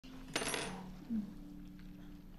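A single metallic clink, like a small metal object landing on metal, that rings briefly and fades, over a steady low hum.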